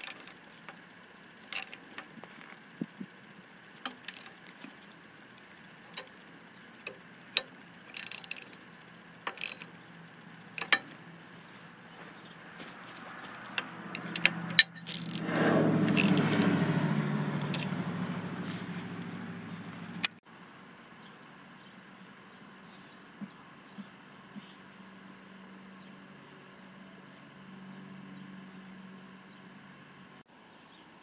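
Scattered small metallic clicks and taps of a hex key turning the bolts on the pier's aluminium feet as they are tightened down. About halfway through, a louder rushing rumble swells up, fades, and cuts off suddenly; after it, only a few faint ticks.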